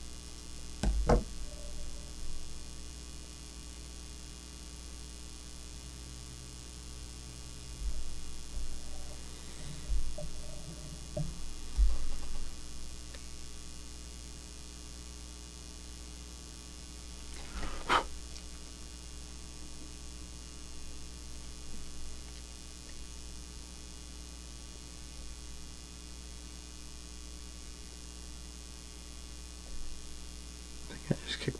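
Steady electrical mains hum. A few light taps and handling noises stand out from it, with one sharper tap past the middle.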